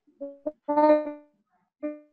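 A child's voice coming over a video call, broken into three short, flat-pitched fragments that sound robotic because the internet connection is unstable.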